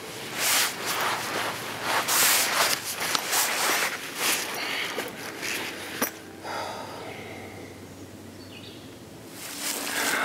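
Hammock fabric and bug net rustling in a series of irregular bursts as a person shifts and settles in, for about the first six seconds, followed by a quieter stretch.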